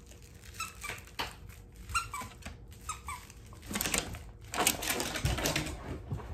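A dog chewing a squeaky plush toy: a string of short, rising squeaks, often two close together, then a longer stretch of rustling as it works the toy.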